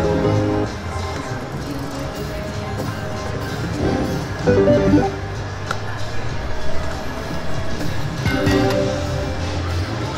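Slot machine playing its game music and short win jingles as the reels spin and pay small wins, with a louder tune about four to five seconds in and again near the end.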